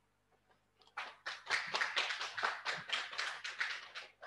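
Audience applauding: many quick, irregular hand claps begin about a second in and thin out near the end.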